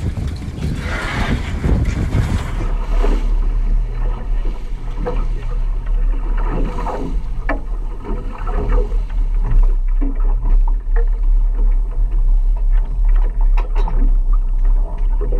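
A boat running under way, heard as a steady deep rumble, with scattered knocks and clatter as crab pots and gear are handled on deck. The first couple of seconds are covered by louder rushing noise before the sound settles.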